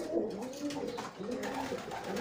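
Pigeons cooing in a loft: several low, arching coos one after another.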